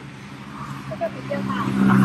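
A road vehicle's engine hum swells to its loudest near the end as it drives past.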